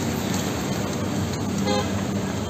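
Steady roadside noise around a car on fire: a low vehicle engine hum under a rushing haze, with a brief horn-like toot near the end.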